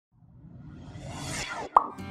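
Logo-animation sound effect: a rising rush of noise that builds for about a second and a half, cuts off, then a single sharp pop, the loudest moment, just before the end.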